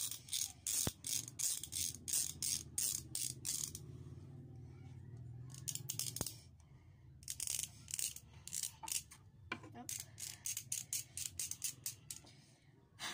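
Knife blade scraping and shaving a plastic ballpen barrel in short, quick strokes, about three a second, with a pause of about two seconds near the middle.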